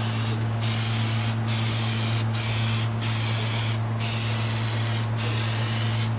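Aerosol spray can of Plasti Dip spraying in a series of passes, each broken by a short pause about every second. A steady low hum runs underneath.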